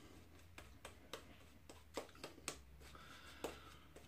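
Shaving brush working soap lather over the face, heard as faint, irregular soft clicks and rustles.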